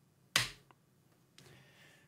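A single sharp keystroke click on a computer keyboard, the Enter key sending a typed command, followed by a faint tick.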